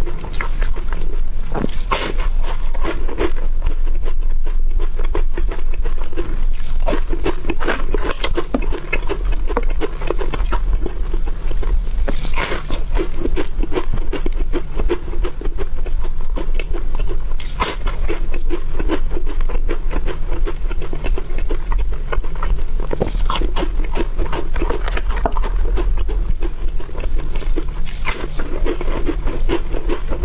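Close-miked crunching and chewing of crisp layered wafer bars, a continuous crackle with several sharper crunches of fresh bites spread through.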